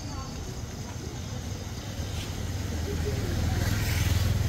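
A motor vehicle's engine rumbling close by, growing louder through the second half as it draws near, with faint voices in the background.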